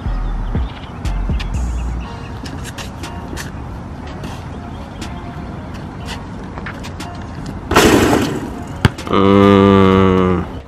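Basketball dribbled on an outdoor asphalt court: a run of sharp bounces, two or three a second, over background music with a deep bass at the start. About eight seconds in comes a loud rush of noise, then a loud steady pitched tone through the last second.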